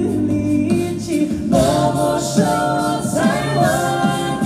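Mixed male and female a cappella group singing live through microphones, holding close-harmony chords that grow fuller about a second and a half in.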